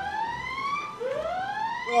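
A siren wailing in rising sweeps, each climbing in pitch for about a second and then starting over from low, the next one starting about a second in.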